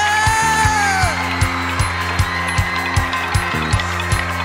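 Luk thung band music with a steady kick-drum beat of about two and a half strokes a second; a male singer's long held note slides down and ends about a second in, leaving the band playing.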